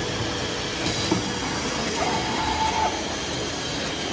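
Lithium battery electrode-stacking machine running: a steady mechanical din with a couple of clicks about a second in. A held whine starts about two seconds in and lasts just under a second; it comes back roughly every three seconds as the machine cycles.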